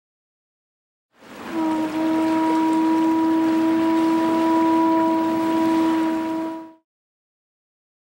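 A single long, steady boat horn blast on one tone, starting about a second and a half in and held for about five seconds over a rushing noise, both ending together near the end.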